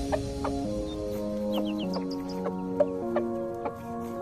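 Background music of held chords changing about every half second, with a chicken's short clucks over it and a few brief high chirps about one and a half seconds in.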